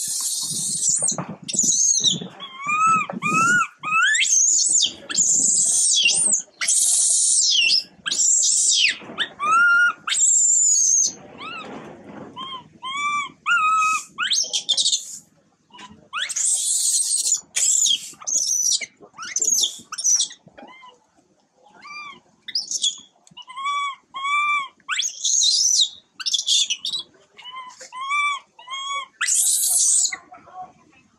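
Baby long-tailed macaque crying in distress: a long, broken series of shrill screams, mixed with short arching whimper calls that come in runs of two or three. These are the cries of an infant upset at its mother leaving.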